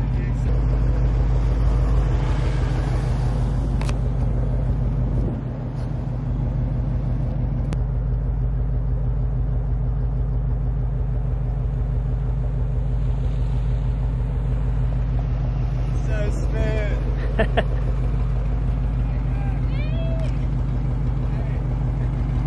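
Nissan GT-R R35's twin-turbo V6 idling steadily, with a brief dip in level about five seconds in.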